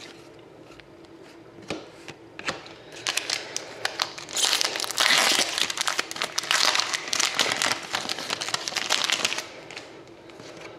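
Silver foil trading-card pack wrapper crinkling and tearing as it is peeled open by hand, from about three seconds in until shortly before the end, loudest in the second half. A couple of light clicks come before it.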